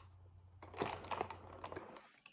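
Faint crinkling and scratching of a cardboard advent calendar being handled, beginning about half a second in with a scatter of small clicks.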